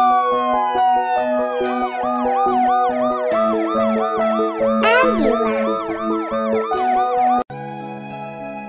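Ambulance siren sound effect over background music. A long tone falls in pitch, then a quick rising-and-falling warble runs at about two cycles a second. A fast upward swoop and a falling slide come about five seconds in, and siren and music stop abruptly near the end, giving way to softer music.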